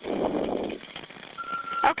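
Recorded emergency phone call, narrow and phone-like: a muffled burst of noise on the line through the first second, then a short steady beep about a second and a half in, a click, and the dispatcher beginning to answer.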